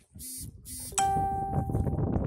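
Two short hissing swishes, then a sharp bell-like ding about a second in that rings and fades within a second, over background voices.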